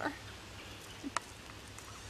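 Quiet forest ambience with a single short, sharp click about a second in.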